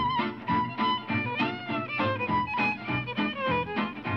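Background music: a fiddle melody with vibrato over a steady beat.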